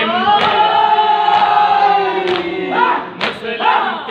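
A crowd of men singing a noha lament in unison, one long held line, with a thump about once a second from hands beating on chests. Near the end the singing breaks into short shouted calls, one on each beat.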